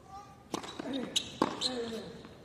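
Tennis ball struck by rackets on a hard court: a serve and the quick exchange that follows, with about four sharp hits, the first about half a second in. Short voice sounds come between the hits.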